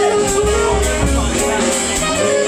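Small live jazz band playing: a drum kit keeps time with steady cymbal strokes under sustained notes from piano and electric guitar.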